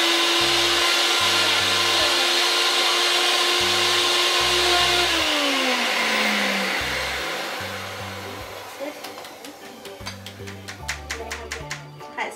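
NutriBullet blender motor running steadily at full speed, pureeing strawberries, then winding down with a falling pitch about five seconds in as it is switched off. Light clinks follow near the end.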